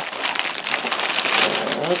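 Clear plastic Lego parts bags crinkling and rustling as they are pulled out and handled, a steady crackle of thin plastic.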